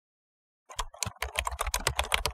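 Computer keyboard typing sound effect: a quick run of keystrokes, about eight a second, starting about two-thirds of a second in, as on-screen title text is typed out.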